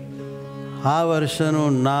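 A steady musical drone of several held notes, with a man's voice joining about a second in and drawing out one word for about a second.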